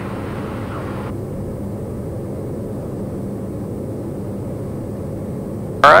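Steady cockpit drone of a TBM 910's single Pratt & Whitney PT6A turboprop engine and propeller in flight, with a steady low hum. A fainter hiss above it cuts off suddenly about a second in.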